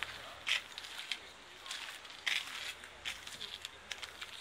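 Footsteps on asphalt: about six short scuffing steps at a walking pace, roughly one every two-thirds of a second.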